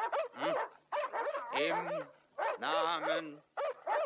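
Dogs barking and yelping repeatedly, in short calls that rise and fall in pitch.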